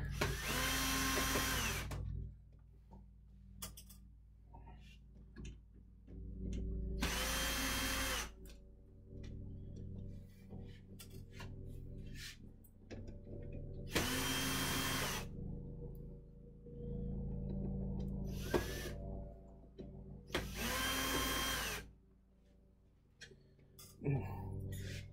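Cordless drill-driver backing out small screws from a box fan's front cover in four short runs, each about a second and a half. Each run's motor whine rises as it spins up and falls as it stops. Small clicks from the screws and handling come between runs, over a steady low hum.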